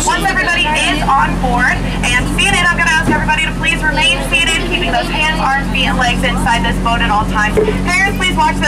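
Steady low hum of a tour boat's motor, heard from on board under continuous talking from the skipper on a microphone and the riders.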